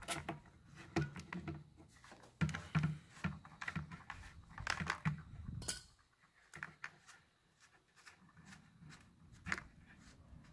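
Irregular clicks, knocks and light scraping as a small metal wrench and hands work the white plastic piston head loose from the pump cylinder of a manual backpack sprayer. The worn packing underneath is being taken out for replacement. The handling sounds come mostly in the first six seconds, then it goes quiet apart from one click near the end.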